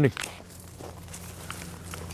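Faint footsteps crunching on a gravel path, a few soft irregular steps, over a low steady hum.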